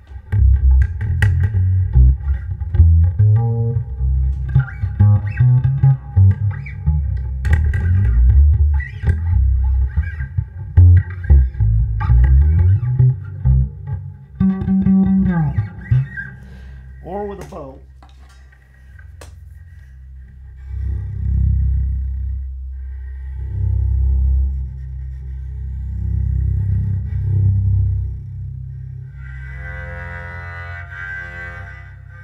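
Homebuilt electric bass with a hand-carved maple neck, played upright through an amplifier: a run of quick plucked low notes for about sixteen seconds, then a sliding note. After a short lull, slower swelling bowed notes follow.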